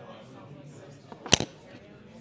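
Indistinct background chatter of people talking, with one sharp, loud knock a little past halfway.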